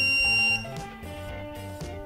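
Orico dual-bay hard drive cloning dock giving one high, steady electronic beep that cuts off about half a second in, as its start button is pressed to begin the clone. Background music plays quietly underneath.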